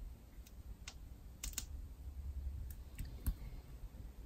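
Faint, scattered clicks and light paper handling from hands pressing and smoothing paper pieces down on a scrapbook layout, about half a dozen small taps over a low background hum.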